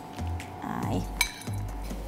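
A single sharp metallic clink against a stainless-steel mixing bowl about a second in, ringing briefly, over background music with a steady bass beat.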